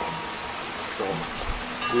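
A pause in a man's talk filled by steady background hiss, with a short spoken word about a second in. Faint music starts coming in near the end.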